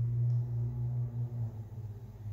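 A steady low hum, like a single deep tone with a faint overtone, weakening a little about a second and a half in.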